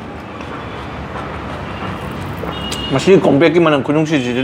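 A rushing noise like passing street traffic slowly builds over the first three seconds. From about three seconds in, a man speaks over it.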